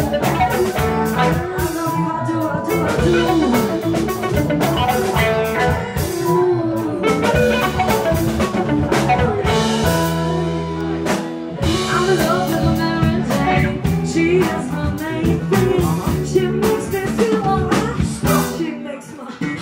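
Live funk band playing an instrumental stretch on electric guitar, bass, drum kit and keyboards. About ten seconds in the drums drop back under a held low chord for a second or two, then the groove picks up again.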